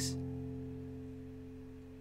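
The last chord of a song on an acoustic guitar, ringing out and slowly fading away with no further strums.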